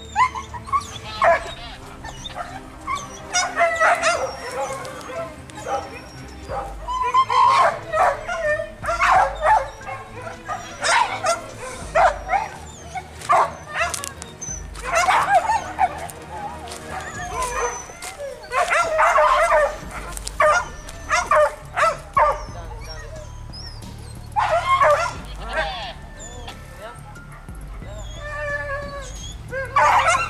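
Hunting dogs barking and yelping in repeated loud bursts, mixed with men's shouts, over faint background music.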